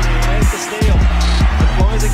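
Background music with deep held bass notes and repeated drum hits.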